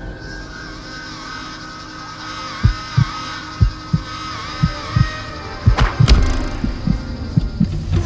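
Tense film soundtrack: a low drone with a wavering high tone, joined a few seconds in by low heartbeat-like thumps in pairs about once a second, with a sharp hit near the end.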